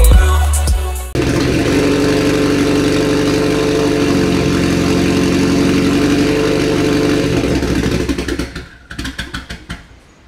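Mitsubishi Lancer Evolution X's turbocharged 2.0-litre four-cylinder running. It comes in suddenly about a second in, holds a steady note for some six seconds, then falls away into a few uneven pulses near the end.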